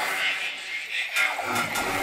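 Hardstyle dance music in a breakdown: the bass drops out for about a second, leaving thin upper sounds, then the music fills back in near the end.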